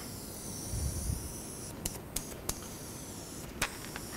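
Steady room hiss with a brief low thump about a second in, then four sharp clicks in the second half, the last the loudest.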